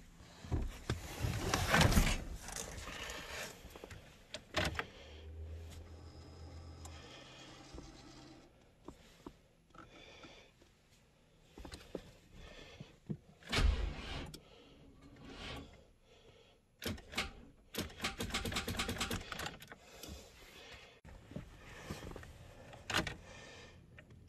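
Clicks, knocks and rustling in a pickup cab as the steering column and controls are handled, with a thump about two seconds in and another about halfway. There is a short low hum about five seconds in, and a quick run of clicks near the end.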